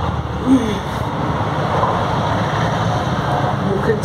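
Steady rushing background noise with a low hum, running unchanged; a brief voice sound about half a second in.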